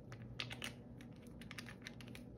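A few faint, light clicks and taps from small objects being handled, in two short clusters: about half a second in and again near the end.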